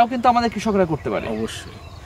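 A man speaking for about the first second, then a quieter stretch of faint background.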